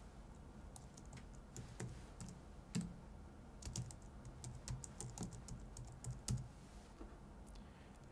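Faint, irregular typing on a computer keyboard: scattered keystroke clicks, with a few louder ones.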